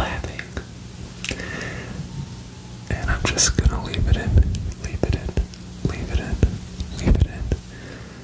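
Close-up ASMR whispering mixed with hand movements right against the microphone. From about three seconds in until near the end come soft rustling, crackling brushes and low bumps.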